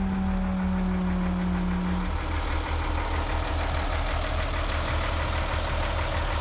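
Twin Caterpillar 3126 inline-six marine diesels idling, heard loudly through the open engine-room hatch with a steady pulsing rumble. A hydraulic hatch-lift pump hums along with them, dropping slightly in pitch and stopping about two seconds in.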